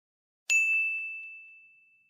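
A single bright ding sound effect about half a second in, one clear tone ringing out and fading over about a second and a half, with a couple of faint clicks just after it.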